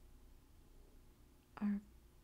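Near silence: faint room tone. About one and a half seconds in, a woman says a single soft-spoken syllable.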